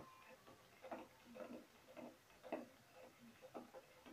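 Faint light ticks, roughly one or two a second, from a plastic ladle stirring milk tea in an aluminium pot, over near silence.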